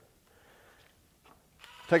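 Near silence, with a faint, brief rustle of handling and a soft tick. A man's voice begins just before the end.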